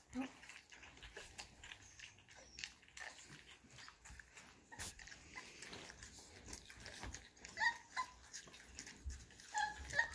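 Six young Bull Terrier puppies eating soft mush from stainless steel bowls: faint lapping and chewing with small clicks against the metal, and a few short squeaks about eight seconds in.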